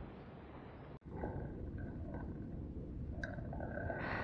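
Low rumbling noise on the camera's microphone, cutting out for an instant about a second in, with a faint click near the end.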